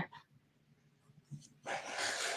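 Quiet room tone, then near the end a person's short breathy exhale, heard as a murmured "mm".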